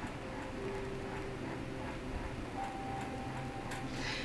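Quiet room tone: a low steady hum with a faint thin tone that comes and goes, and a few faint clicks near the end.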